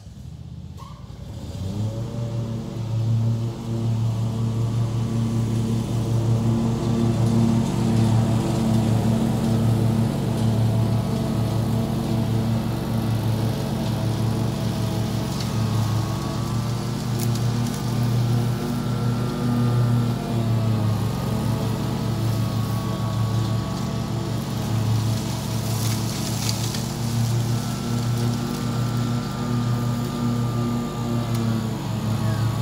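Hustler FastTrack Super Duty 48-inch zero-turn mower's engine starting up and rising to a steady high running speed within about two seconds, then running steadily as it mows, with a brief dip in pitch about two-thirds of the way through.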